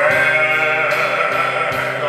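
Male baritone voice scooping up into a long sustained note with vibrato, over a steady electronic keyboard accompaniment.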